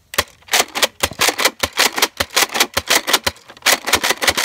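Nerf Alpha Trooper CS-12 pump-action dart blaster fired in rapid succession, a fast run of sharp plastic clacks about six a second with a brief pause a little after three seconds in, emptying its magazine.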